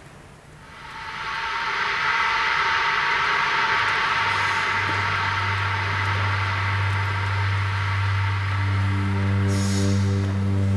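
Electronic music played on smartphone and tablet app instruments: a dense wash of sound swells up over the first two seconds, a low steady drone joins about four seconds in, and a higher pitched tone with overtones enters near the end.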